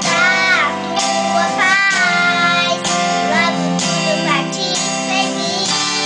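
A child singing a slow song, the voice gliding and holding notes over a guitar accompaniment.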